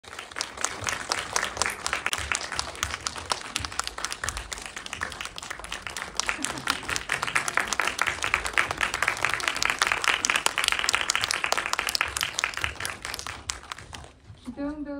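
Audience applause in a cinema hall: many hands clapping together to welcome guests onto the stage. The clapping stops abruptly just before the end.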